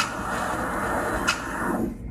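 The edited intro of an electronic dance track playing back from DJ software: a steady noisy wash with no beat, thinning out just before the end.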